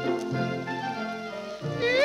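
Orchestral introduction of a 1938 German popular song record with sustained, layered instrumental tones. Near the end a high melody line with wide vibrato slides in and rises in pitch.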